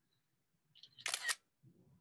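iPad camera shutter sound as the Stop Motion Studio app captures a frame: one short, sharp double click about a second in, with a fainter sound just before it.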